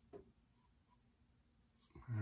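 Near silence broken by one faint, short scrape of a Parker 26C open-comb double-edge safety razor drawn over lathered skin just after the start.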